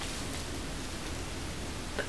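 Steady faint hiss of background room noise, with no distinct sound event.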